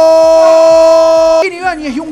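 Football commentator's drawn-out "gol" cry: one long, loud note held at a steady pitch that cuts off about one and a half seconds in, followed by ordinary commentary speech.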